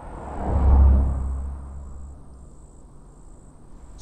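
A vehicle passing on the street, its low rumble swelling to a peak about a second in, then fading into a steady low traffic hum.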